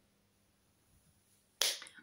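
Near silence, then a single sharp hand clap near the end.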